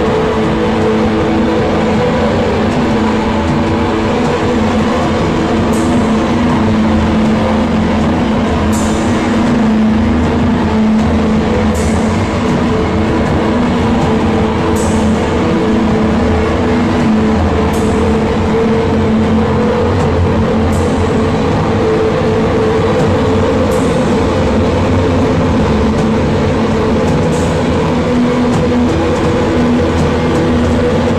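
A live drone and noise-rock band playing loud: heavily distorted guitars and bass hold a droning chord, with a cymbal struck about every three seconds.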